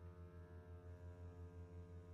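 A quiet, sustained low note held by the low bowed strings of a string orchestra, pulsing gently about seven times a second.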